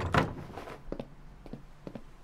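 A wooden lattice door moved with a short rush of noise, followed by a few light taps.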